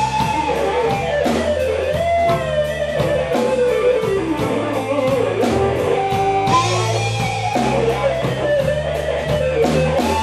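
Live blues band playing an instrumental break: an electric guitar solo with bent, gliding notes over bass and a steady drum beat.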